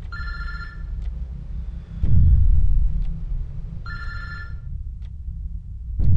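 A mobile phone ringing with an electronic trill, two rings about four seconds apart, over a constant low rumble. A deep boom hits about two seconds in and again at the end, and a faint tick sounds about every two seconds.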